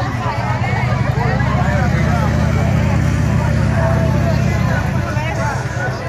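Motorcycle engine revving hard in a burnout on a dirt pit, a steady low rumble that builds about a second in and eases off near the end, with crowd chatter over it.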